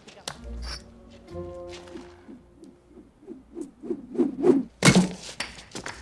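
Film score playing, then a loud thud about five seconds in: a thrown brick striking a man's head, as a movie sound effect.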